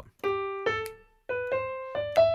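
Digital piano playing single notes of a major scale, climbing step by step in a swung rhythm, with a short gap near the middle. A couple of sharp finger snaps on the backbeat fall between the notes.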